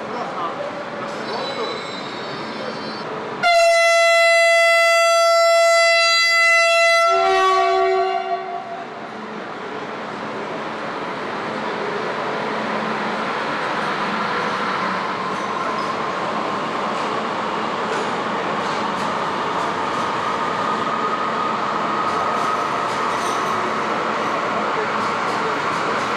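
High-speed electric train sounding its horn: one long steady blast of about three and a half seconds, then a brief lower note as it sets off. After that, the rushing rumble of the train pulling out along the platform grows louder and then holds steady.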